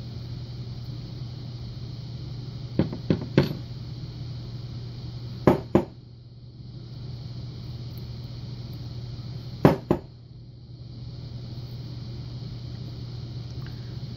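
Small sharp metallic clicks of steel tweezers working serrated pins and springs out of the chambers of a brass lock cylinder. They come in three short clusters, two or three clicks each, about three, five and a half and ten seconds in.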